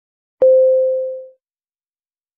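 A single electronic beep, one steady mid-pitched tone that starts sharply and fades out over about a second. It is the cue to start speaking the response.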